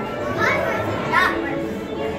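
Unintelligible chatter of people walking through a corridor, with a child's high voice calling out briefly twice, about half a second and a second in.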